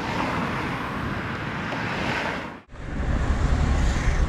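Road traffic: a steady rushing of cars driving past on a city road. About two and a half seconds in it cuts suddenly to the deeper rumble of a car heard from inside its cabin while driving.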